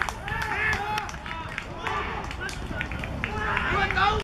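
Youth footballers and onlookers shouting and calling out in short, scattered shouts just after a goal, with a few sharp clicks among them.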